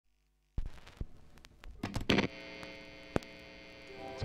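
A few sharp clicks and crackles, the loudest about two seconds in, then a steady electrical hum with a buzzy edge.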